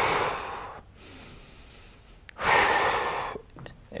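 A man breathing audibly through a held isometric wall-press position: one long breath fading out about a second in, then a second breath about two and a half seconds in.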